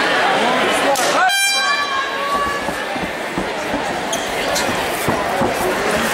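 Crowd voices filling a large hall. About a second in, a single loud pitched signal sounds and rings for about a second: the signal that starts the round.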